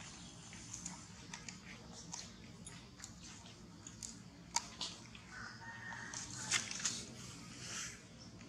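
Macaque biting and chewing a piece of fruit: irregular wet crunches and smacking clicks, the loudest about four and a half seconds in and a cluster around six and a half seconds.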